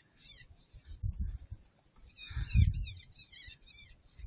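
Electronic predator caller playing high-pitched squealing calls in quick repeated series, each note arching and falling, with dull low rumbles on the microphone between them.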